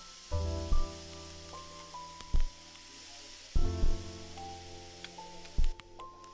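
Sautéed vegetables sizzling in a hot frying pan as white wine vinegar is added to deglaze it, a steady hiss that cuts off near the end. Background music with bass notes and a regular beat is the loudest sound throughout.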